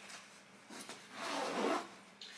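A fabric baby bag being handled and rummaged through: two rustling swishes, the second and louder about one and a half seconds in.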